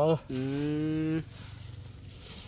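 A cow mooing: a brief call rising in pitch right at the start, then a level, held moo of about a second.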